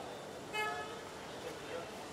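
A brief single-pitched car horn toot about half a second in, over steady background chatter of voices.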